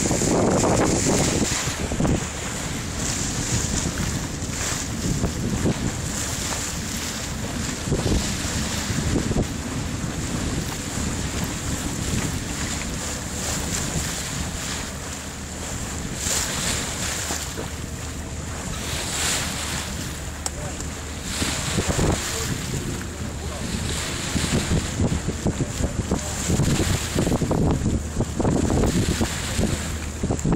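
Wind buffeting the microphone in gusts over the wash of sea water, with a faint low steady drone underneath; the gusts grow stronger near the end.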